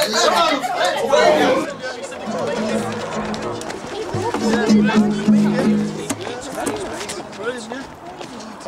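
A group of people talking over one another. From about two seconds in, music with steady low held notes runs under the voices.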